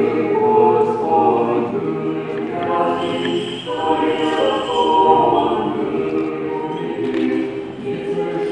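Russian Orthodox liturgical chant sung a cappella by a choir of several voices in sustained chords. There is a short break between phrases about three and a half seconds in.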